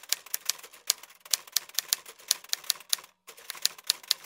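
Typewriter keystroke sound effect: a rapid run of sharp key clicks, about five or six a second, with a brief break about three seconds in.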